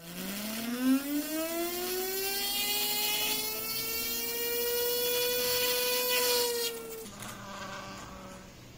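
Small 12 V DC motor salvaged from a car CD player spinning up a gyroscope's metal flywheel: a whine that rises in pitch over the first two to three seconds and then holds steady, with a short knock about a second in. About seven seconds in the whine drops away, leaving a fainter hum.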